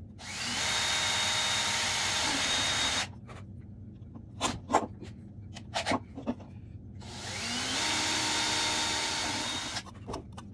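Porter-Cable 20V cordless drill with a 3/32-inch bit drilling two holes through a plastic OEM center wheel cap: two runs of about three seconds each, the second spinning up more gradually. A few short knocks come between the two runs.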